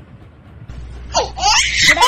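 A baby laughing, breaking out loudly about a second in after a quiet start.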